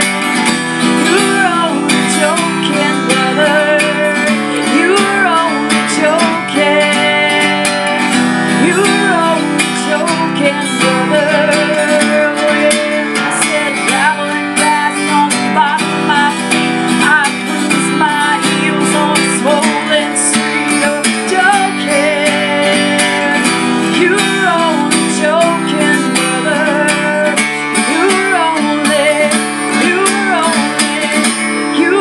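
A woman singing while strumming chords on an acoustic guitar, solo voice and guitar together throughout.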